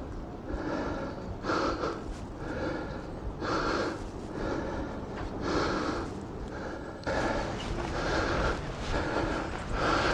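A man breathing hard and fast close to the microphone, about one breath a second, out of breath from climbing.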